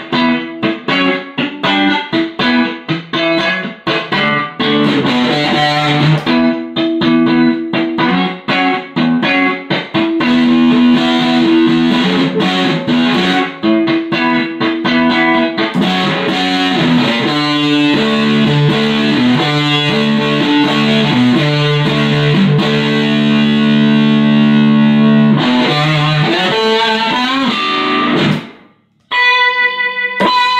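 Stratocaster-style electric guitar played through a home-built Big Muff Pi clone fuzz pedal, giving a thick, distorted tone. Quick picked notes and riffs come first, then longer held notes and chords. The sound breaks off briefly about a second and a half before the end, and a new chord is struck.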